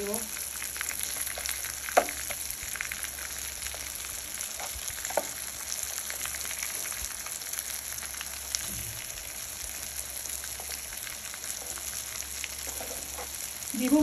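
Rajma cutlets shallow-frying in oil in a nonstick pan: a steady sizzle, with a few sharp clicks of a metal spatula against the pan as the cutlets are turned, the loudest about two seconds in.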